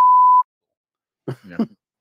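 A single loud censor-style bleep, one steady tone held for about half a second right at the start, cutting off into silence. A short laugh follows about a second later.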